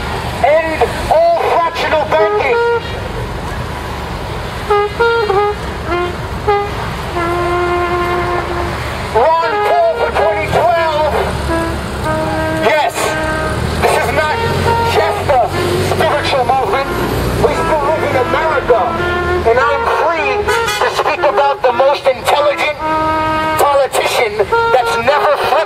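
A man's voice shouting through a handheld megaphone, thin and distorted, over the steady rumble of passing street traffic. A few long, steady pitched tones stand out, about seven seconds in, around twelve seconds and near the end.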